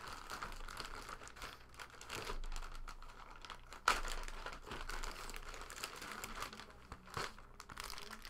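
Thin plastic bag rustling and crinkling as hands rummage in it and pull an item out, with a sharper crackle about four seconds in.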